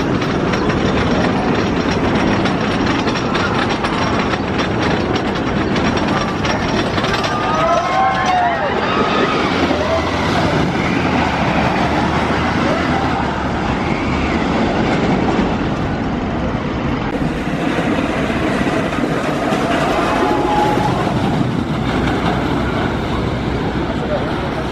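Wooden roller coaster train running along its wooden track with a steady loud rumble and clatter. A few short cries, most likely from riders, come about eight to ten seconds in.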